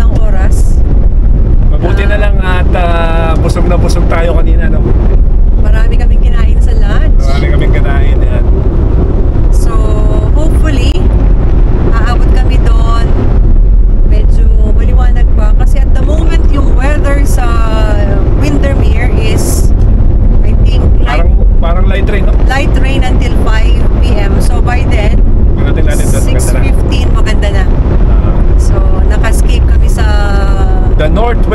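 Two people talking inside a moving car over a steady, loud rumble of road and engine noise at motorway speed.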